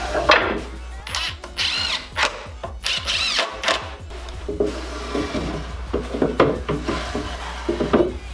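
Wooden drawer being pushed in and out of its wooden cart frame: repeated wood-on-wood knocks and rubbing as it slides and catches.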